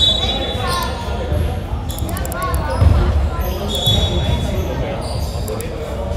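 A basketball bouncing on a hardwood gym floor, the thumps echoing in a large hall, with players' voices and sharp clicks around it. A brief high steady tone comes about four seconds in.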